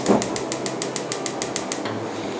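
Rapid, even clicking of a gas stove's spark igniter as a burner is lit to heat oil, about seven clicks a second, stopping shortly before the end.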